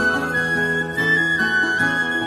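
Background music: an instrumental break between sung verses of a folk song, a melody of held notes stepping in pitch over accompaniment.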